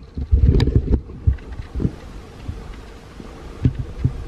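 Wind rumbling on a handheld camera's microphone, with heavy thumps of the camera being handled, most of them in the first second, and a short sharp click about half a second in.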